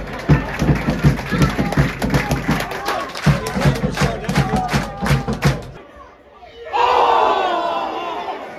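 Football crowd chanting with loud rhythmic claps and thumps, about three a second. It stops suddenly near the end and gives way to a crowd shouting.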